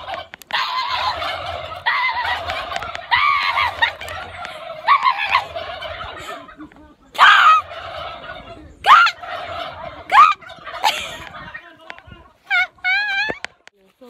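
Turkeys gobbling over and over in rapid warbling bursts, with several louder, sharper calls in the second half.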